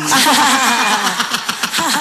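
Several human voices sounding at once without clear words, overlapping and pulsing.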